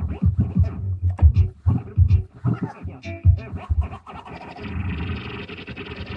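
A track played on a Numark CDX CD turntable and scratched by hand on its vinyl control platter, the beat chopped into short stop-start bursts. From about four seconds in it gives way to a steadier, hissier stretch.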